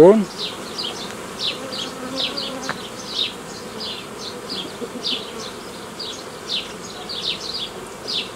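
A honeybee colony buzzing around an open hive: a steady hum with many short falling buzzes from bees flying close by.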